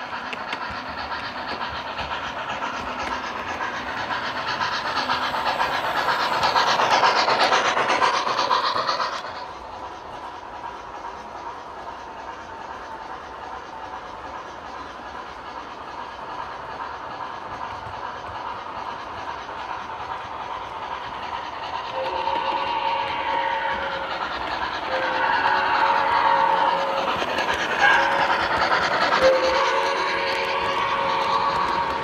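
O gauge model train running on the layout, its wheels clicking along the track, loudest in the first third and then dropping off suddenly. From about two-thirds of the way in, as freight cars roll past, the locomotive's sound-system horn sounds in several blasts.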